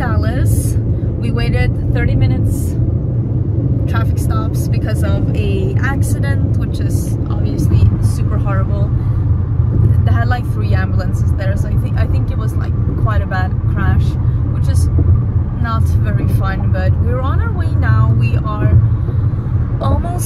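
Steady low road and engine rumble inside a moving car's cabin, with a woman talking over it.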